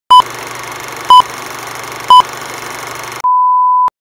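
Film countdown leader sound effect: three short, loud beeps a second apart over a steady hiss, then a longer beep of the same pitch that ends in a click just before the count runs out.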